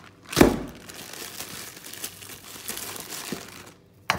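A single loud knock about half a second in, then a plastic food bag crinkling and rustling for about three seconds as it is handled.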